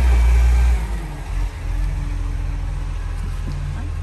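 Garbage truck engine running: a loud low rumble that drops away about a second in, leaving a steadier, quieter drone.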